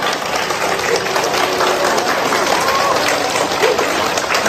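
A large group of people clapping their hands, with scattered voices calling out.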